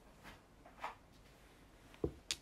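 Near silence: quiet room tone with one faint, soft click just under a second in.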